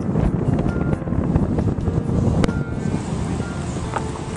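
Steady low rumble of wind buffeting the microphone of a moving handheld camera, with faint music underneath.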